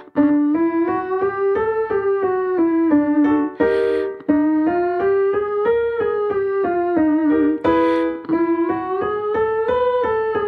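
Roland digital piano playing a warm-up pattern of quick notes that step up and back down, three runs in a row, with a voice singing the same notes joined smoothly together. A breath is drawn before each new run, about four and eight seconds in.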